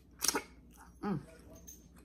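Close-miked eating sounds: a sharp wet mouth smack at the fingers about a quarter second in, then a short falling 'mm' hum around one second, followed by faint chewing clicks.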